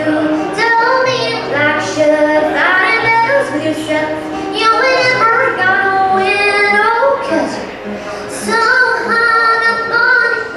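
A woman singing a song live, accompanying herself on acoustic guitar, her voice holding and sliding between long notes.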